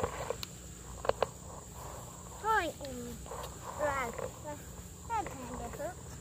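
German Shepherd puppy crying out during rough play-biting: three short, high cries that fall in pitch, about a second and a half apart, after a couple of sharp clicks about a second in.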